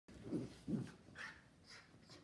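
Schnauzers play-wrestling: two short, low barks about half a second apart, then a fainter, higher sound.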